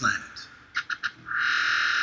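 Electronic sound design in a promo soundtrack: a few short glitchy stutters, then a steady, thin high-pitched synth sound from just over a second in.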